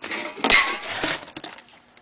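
Cardboard snack box and its packaging being handled: a crinkly rustle with small clinks in the first second, loudest about half a second in, then fading to a few light clicks.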